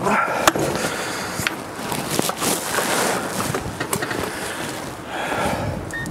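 Several sharp clicks and knocks from a man climbing into the seat of an electric forklift, over a steady rushing noise.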